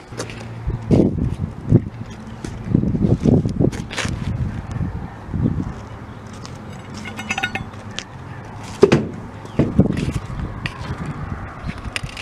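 Scattered knocks and scuffs over a low steady hum outdoors, with a brief run of light metallic clinks about seven seconds in.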